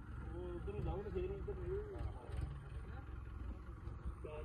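A man's voice talking faintly at a distance, over a steady low rumble.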